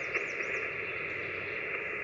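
Steady static hiss from an amateur radio receiver's speaker, tuned between voice transmissions, with the band noise held to the radio's narrow voice passband. Faint high-pitched chirps sound near the start.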